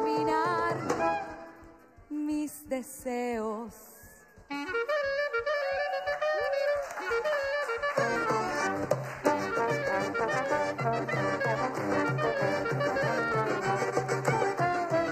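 A small live band of clarinet, trombone, accordion and sousaphone. A held chord dies away, then a few wavering vibrato notes, then a solo clarinet melody from about four and a half seconds in. Near the middle the whole band comes in with a steady rhythmic bass line under the tune.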